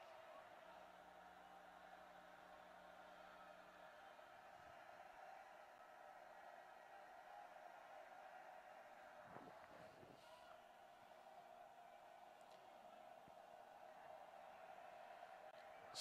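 Near silence: a faint, steady background hiss of the broadcast feed, with no distinct event.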